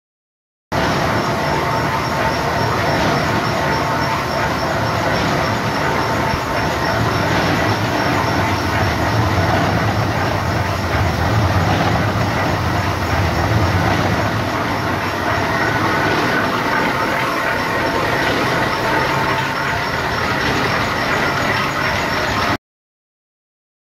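Ore ball mill running, grinding screened ore with water: a steady, loud, dense mechanical rattle and rumble with many small knocks, starting suddenly about a second in.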